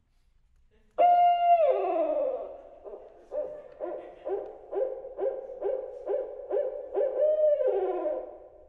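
Barred owl calling: a loud held hoot that drops away in pitch, then a run of about nine short hoots at roughly two a second, ending in another drawn-out hoot that falls in pitch. It is a recorded call played back over the loudspeakers as the piece's owl part.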